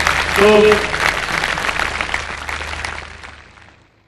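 Audience applause that dies away over about three and a half seconds, with a brief voice calling out from the crowd about half a second in.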